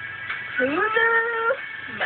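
A young woman singing one long note that slides up and then holds for about a second, over quiet backing music.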